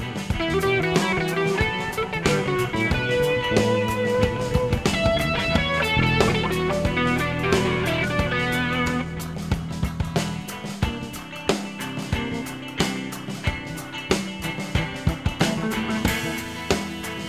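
Live band music: electric guitars playing dense, busy note lines over electric bass and a drum kit. In the second half the drum hits stand out more sharply.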